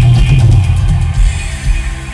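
Live electronic synth-pop music from a band on a loud concert sound system, with synthesizers, heavy pulsing bass and a steady beat.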